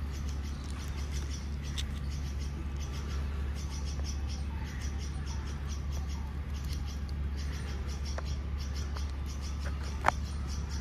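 A squirrel calling with short, high chirps repeated a few times a second, over a steady low hum.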